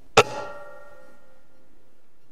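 A single shot from an Air Arms S510 .177 pre-charged pneumatic air rifle: a sharp crack followed by a metallic ringing that dies away over about a second and a half.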